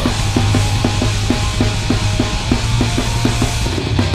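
Heavy metal song by a band on drums and distorted guitar, playing an even, fast chugging rhythm of about four to five hits a second over a heavy, steady low end, with no vocals.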